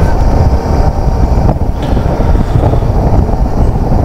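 A Suzuki V-Strom 650 motorcycle under way at road speed: heavy, steady wind rush on the microphone with the bike's V-twin engine running underneath.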